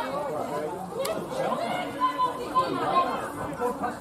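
Several people's voices chattering and calling out at once, overlapping with no pause, with one short sharp knock about a second in.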